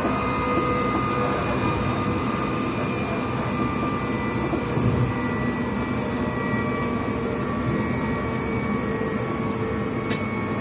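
Passenger train running at speed, heard from inside the carriage: a steady rumble of wheels on the rails with a whine of several high tones that drifts slightly lower in pitch, and a few faint clicks near the end.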